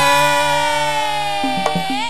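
Campursari performance: a singer holds one long vocal note that sags slightly in pitch, over a steady low accompaniment, with a few hand-drum (kendang) strokes in the second half.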